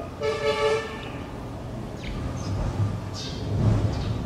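A horn sounds once, a steady pitched toot lasting just under a second, over a continuous low background rumble.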